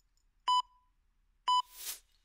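Two short electronic timer beeps about a second apart, counting down to the start of an exercise interval, then a whoosh swelling near the end.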